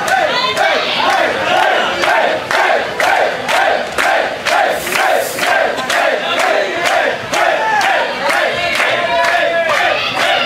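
Concert crowd chanting in unison, a short sung phrase repeated about twice a second, with rhythmic hand clapping.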